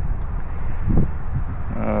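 Steady background hum and hiss with a faint high chirp repeating about twice a second, and one brief low sound about a second in.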